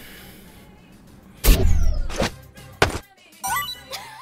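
Outro stinger of music and sound effects: a heavy low boom with a falling swoosh about a second and a half in, a second hit soon after, then quick sliding high tones near the end.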